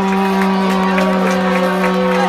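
One long, loud, low note, held dead steady on a single pitch like a blown horn, over crowd noise.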